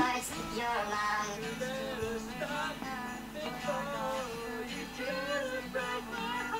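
A song with a sung vocal line, played over a video clip so that the clip's own talk is hard to make out.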